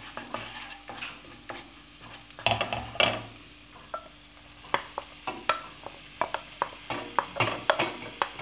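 Olive oil with spices and garlic sizzling in a stainless steel pan while a spoon stirs and knocks against it. From about halfway, steamed chopped purslane is scraped off a plate into the pan, giving a run of quick clicks and scrapes.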